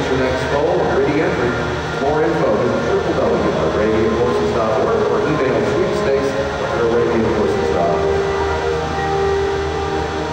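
Indistinct voices of several people talking at once over a steady low rumble, in a large indoor arena.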